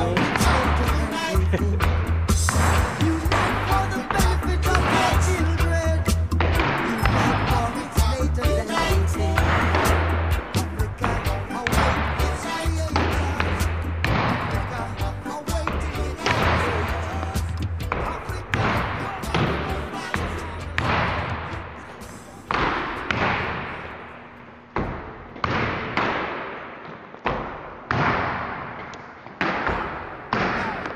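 Reggae music with a steady bass line fades away about two-thirds of the way through. Then a ball thrown against a wall hits it repeatedly, about once every second or so, each hit echoing in a large gym hall.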